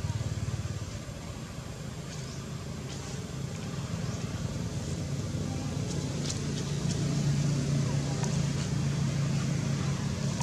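A motor engine running steadily with a low hum, growing louder over the second half, with a few faint high chirps near the middle.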